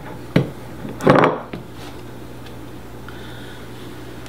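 Spatula tapping and scraping sourdough starter off against the rim of a container: a light tap, then a short scrape about a second in, followed by a steady low hum.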